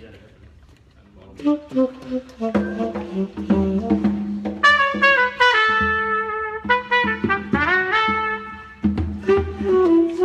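A small band starting to play a song: a brass instrument plays a melody over accompaniment, coming in about a second in and getting louder about halfway through.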